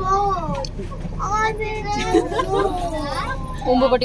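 Young children's high-pitched voices chattering, over a steady low background rumble.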